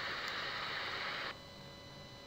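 Steady background hiss of a voice recording, with no other sound; just past halfway it drops abruptly to a fainter hiss with a faint steady hum.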